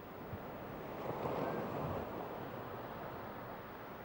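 Ocean surf washing onto a sandy beach: a steady rush that swells about a second in and then eases off.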